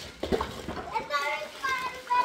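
A young child's high-pitched voice, calling out or babbling in the second half, with a couple of short knocks in the first half second.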